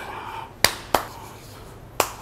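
Two sharp clicks about a third of a second apart, from a metal dumbbell being knocked and shifted in the hands as it is set on the knee before a set.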